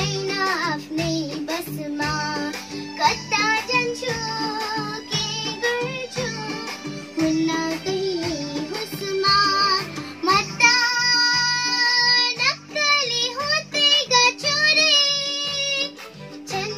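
A young girl singing a Nepali song over a backing track with a steady beat.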